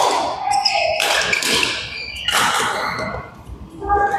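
Badminton doubles rally: racket strings hitting the shuttlecock several times, about a second apart, with footsteps and shoe squeaks on the court mat.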